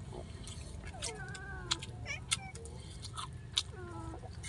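A cat meowing a few times in short, wavering calls, the longest about a second in, over sharp little clicks and smacks of eating.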